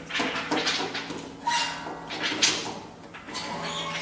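Contemporary chamber ensemble of clarinet, cello, harp and percussion playing noisy scrapes and breathy swells, with a few brief held tones. A low steady tone comes in near the end.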